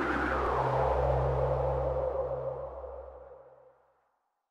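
Logo-reveal sound effect: a whoosh that sweeps downward in pitch over a low steady hum, both fading away to silence.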